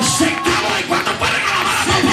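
Loud live worship music from a church band with keyboard and drums, a man singing into a microphone over it.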